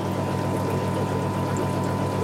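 Aquarium filtration running: a steady trickle of moving water with a constant low electrical hum from the pumps.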